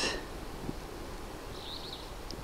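A brief, faint, high bird chirp near the end, over steady low outdoor background noise.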